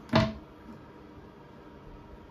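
A single sharp clack as a plastic toilet seat is set down onto the porcelain toilet, ringing briefly, then faint room tone.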